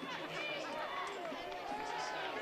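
Steady low murmur of a stadium crowd, with scattered distant voices overlapping and no single voice standing out.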